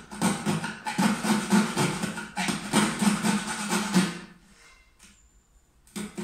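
Coping saw cutting through a wooden skirting board in quick back-and-forth rasping strokes, about three a second. It is cutting the profile for an internal scribe joint. The sawing stops about four seconds in.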